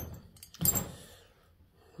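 A single sharp metallic clunk about half a second in, as the cast housing of a Garrett T3 turbocharger is handled and turned over on a workbench, followed by quieter handling.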